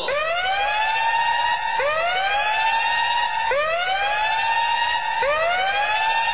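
A siren sound effect in a dance performance's backing track: a rising wail that climbs and levels off, repeated four times about every second and three-quarters, with no beat underneath.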